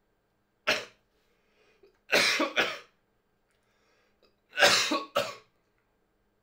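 A man coughing: one short cough under a second in, then a double cough at about two seconds and another double cough near the end.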